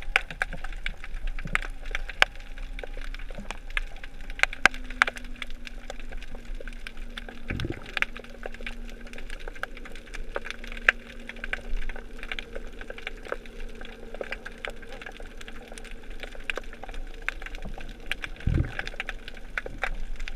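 Underwater sound on a rocky seabed: a constant irregular crackle of sharp clicks, typical of snapping shrimp, over a steady low hum from a distant motor. Two dull low thumps come about a third of the way in and near the end.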